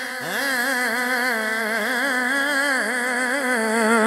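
A man's voice chanting a verse in one long, unbroken melismatic line with a quick wavering vibrato, amplified through a microphone.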